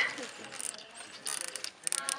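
Hands working shade netting and ties on a lattice of arched poles: rustling, then a quick run of clicks near the end.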